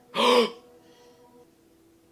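A man gasps once in shock, a short, sharp, voiced intake of breath just after the start.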